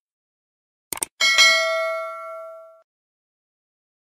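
Sound effect of a subscribe-button animation: a quick double mouse click about a second in, then a bright notification-bell ding that rings out and fades over about a second and a half.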